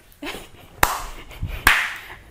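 Two sharp hand claps, a little under a second apart.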